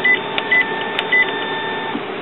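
Epson WorkForce printer's control panel beeping three short times, one for each press of the arrow button as the menu is scrolled down, with a couple of small clicks between. A steady faint whine runs underneath and stops near the end.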